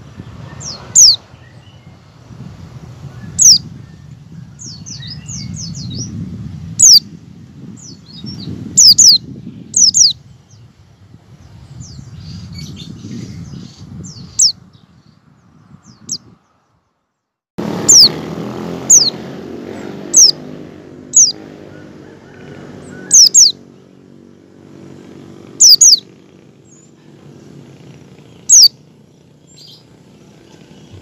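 White-eye (pleci) giving short, sharp, downward-sliding chirps, singly or in quick pairs every second or two: the 'ngecal' calling used as a lure to get other white-eyes to sing. A low rumbling background runs underneath, breaks off completely for about a second midway, and returns as a steadier hum.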